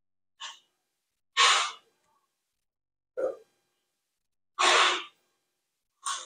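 A man breathing close to the microphone: four short breaths with silence between them, the second and fourth the loudest.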